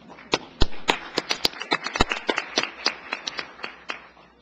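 Audience applauding, many separate hand claps that thin out and fade toward the end.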